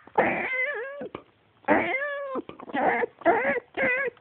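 Cat caterwauling: a run of about five loud, drawn-out, wavering yowls with short gaps between, the yowling of cats mating.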